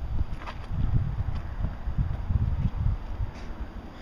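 Wind buffeting the phone's microphone: an uneven low rumble that rises and falls in gusts.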